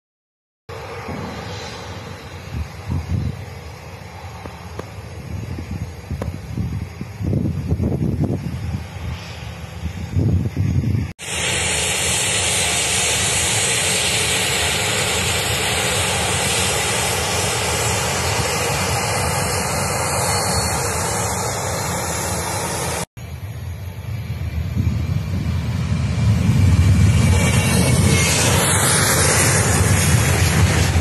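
Boeing 737-800's CFM56-7B jet engines during the take-off run: a steady jet noise that builds to its loudest over the last few seconds as the aircraft rotates. The sound breaks off abruptly twice, about eleven and twenty-three seconds in.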